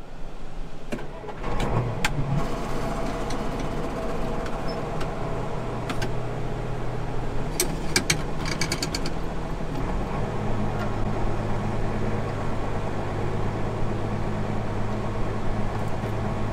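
A Case IH 7140 Magnum tractor's six-cylinder turbo diesel, heard from inside the cab, starting about a second and a half in and then running steadily. About ten seconds in its low note changes as the engine speed is brought up, with a short run of sharp clicks a little before.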